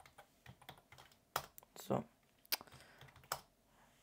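Computer keyboard typing: irregular key clicks with short pauses between them, a few strokes louder than the rest, as an SSH command and a "yes" reply are keyed in.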